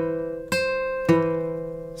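Acoustic guitar notes plucked one at a time, with fresh plucks about half a second and about a second in, each left to ring and fade. The notes sound out an E-to-C interval, a minor sixth, the inverse of a major third.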